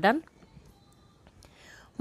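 A woman's voice finishing a word, then a quiet pause with faint room noise and a soft hiss, like a breath, before she speaks again.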